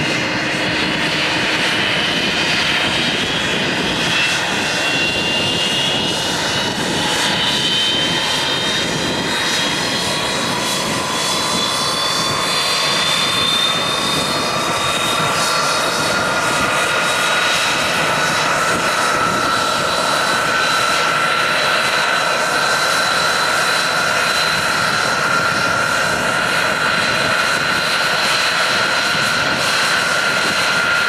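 Tupolev Tu-134's rear-mounted Soloviev D-30 turbofans running as the airliner taxis, a steady jet roar with a high whine that slowly rises in pitch over the first half and then holds steady.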